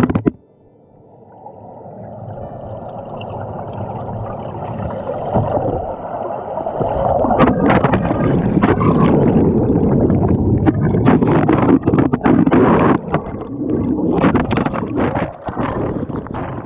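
Churning, gurgling river water heard from a camera swept down through rapids and at times under the surface. It builds from faint to loud over the first several seconds, with scattered knocks and bumps as the camera is tossed about.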